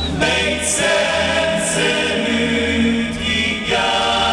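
Choir chanting over a low steady drone in a live concert's opening music, with a few short hissing swells about a second in and near two seconds.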